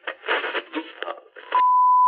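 Test-card sound effect: choppy, crackly radio-like bursts, then a steady high beep tone that starts about three-quarters of the way in and holds.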